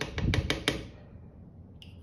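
Metal teaspoon clicking and tapping against a small pot of printing ink as ink is scooped out with the back of the spoon: a quick run of about five sharp clicks, then a faint tick near the end.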